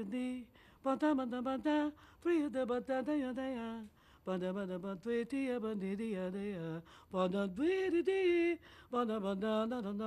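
A woman singing unaccompanied: an improvised melodic line in short phrases with gliding pitches and held notes, broken by brief pauses. It demonstrates a singer improvising a new melody over a song's harmony.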